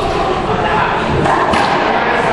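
A racquetball thuds off the racquet and the court wall about one and a half seconds in. Under it runs a steady, echoing din with indistinct voices.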